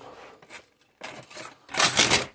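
Short rubbing and scraping noises, with the loudest scrape near the end.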